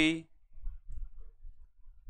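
A short spoken word, then faint, irregular low clicks and handling noise.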